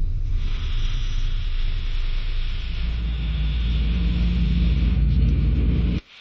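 Dark documentary soundtrack: a deep rumbling drone under a steady hiss, growing deeper and louder about halfway through and cutting off suddenly at the end.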